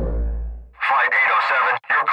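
Background music fading out, then a thin, tinny voice, cut off below and above like a radio transmission, speaking with a short break near the end.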